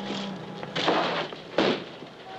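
A wooden door being opened: a short scrape about three quarters of a second in, then a sharp bang about a second and a half in.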